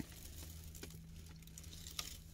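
Quiet car-cabin room tone: a low steady hum with a few faint clicks about a second in.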